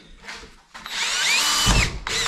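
Cordless drill boring a steel bracket held in a vise with a steel-cutting bit. It starts about a second in, with a high-pitched squeal that rises and falls as the bit cuts, and stops just before the end.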